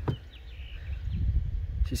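Low, uneven outdoor rumble on the microphone with a few faint bird chirps early on; a man's voice comes in right at the end.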